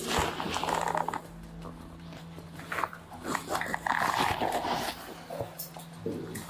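A person's wordless vocal sounds, rough and guttural, in two stretches: one at the start and one past the middle. Under them runs a steady low hum.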